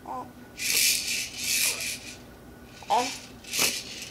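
Baby making soft, breathy vocal sounds in a few short bursts, with a brief voiced coo about three seconds in.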